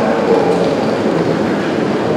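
Steady, even rumbling din of a railway station's train shed, with train noise and the reverberant hubbub of the station blending together.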